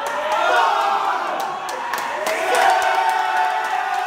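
A group of basketball players shouting and chanting together in a tight huddle, many voices at once in long, drawn-out yells, with sharp smacks scattered among the voices.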